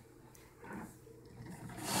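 A hand packing wet shredded cabbage down into a glass jar, the cabbage rubbing and crunching against the glass. It is faint at first and grows louder near the end.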